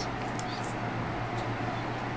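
Steady low hum and hiss of room noise, with a few faint scratches of a felt-tip marker drawing short strokes on paper.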